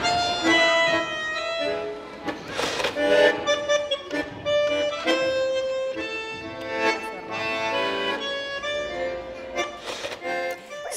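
Bandoneón played with a button pressed and the bellows moving, so the reeds sound: a slow melody of held notes and chords.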